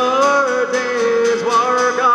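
A male voice holding one long sung note over steady acoustic guitar strumming, about four strums a second.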